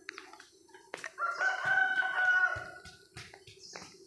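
A rooster crowing once, a single call of about two seconds starting about a second in, with light footsteps on a dirt path around it.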